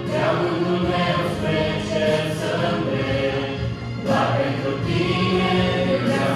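A small mixed group of men's and women's voices singing a worship song together through microphones, holding long notes, with a fresh phrase beginning about four seconds in.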